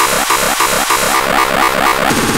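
Extratone electronic music: an extremely fast stream of distorted kick drums blurring into a harsh buzz, with a downward pitch sweep repeating about four times a second.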